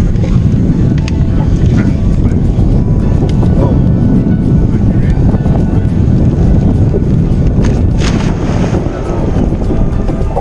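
Heavy wind buffeting on the microphone on an open boat, with a brief splash about eight seconds in as the plastic fish-habitat structure is dropped into the water.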